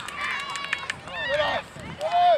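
High-pitched children's shouts and calls during a youth football match, with a few short sharp knocks in the first second.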